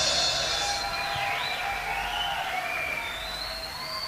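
Live audience noise as the band stops playing: cheering and applause, with a few long whistles that glide slowly up and down.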